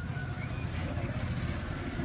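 Steady low rumble of street background noise, like nearby engines or traffic.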